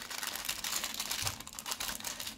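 A small clear plastic baggie of metal nail-art charms being folded and pressed by hand, the plastic crinkling in a quick, fine run of small crackles and ticks.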